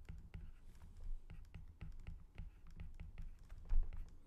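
Stylus tip tapping and sliding on a tablet's glass screen during handwriting: a run of irregular light clicks over a low rumble, with a low thump near the end.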